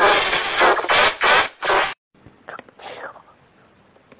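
Effects-processed cartoon audio: a loud, dense, distorted mix of voices and sound for about two seconds that cuts off suddenly, followed by faint, garbled voice fragments.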